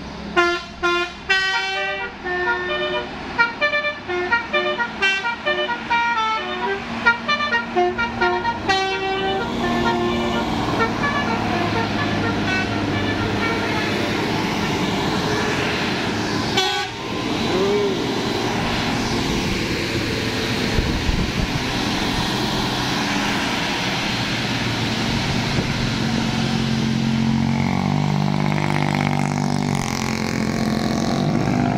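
A tour bus's telolet Basuri multi-tone horn plays a quick melody of short stepped notes for about nine seconds. Then the bus's engine and tyres run steadily as it climbs past round the bend.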